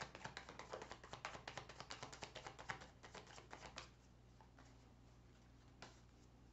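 A Cigano fortune-telling card deck being shuffled by hand: a quick run of soft card clicks for about four seconds, then it stops, with one more click near the end.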